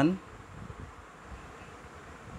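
Faint steady background noise, a low hiss and hum, in a pause between spoken words; the tail of a word is heard in the first moment.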